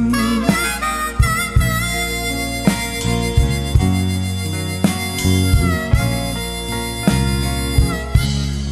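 Blues harmonica playing an instrumental break with held, bending notes over a band backing.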